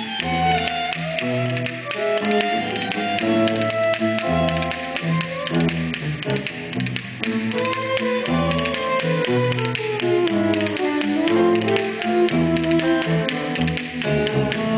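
Live instrumental music from a small ensemble: a bass line of short stepping notes under a melody that rises and falls, with a rapid, steady run of tapping percussion.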